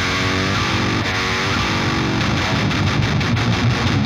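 Heavily distorted metal rhythm guitar played back through the Bogren Digital MLC SubZero amp-sim plugin: a loop of a tight, low riff with heavy hits, playing steadily.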